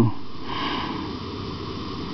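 Steady fizzing hiss of an electrolysis cell giving off oxyhydrogen (HHO) gas bubbles in a pot of electrolyte.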